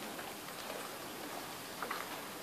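Steady outdoor background hiss with a couple of faint short clicks near the end.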